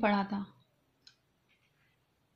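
A woman's speaking voice trailing off in the first half second, then near silence broken by one faint click about a second in.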